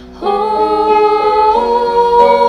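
A worship song: singing in long held notes that come in about a quarter second in and move to a new note about a second and a half in.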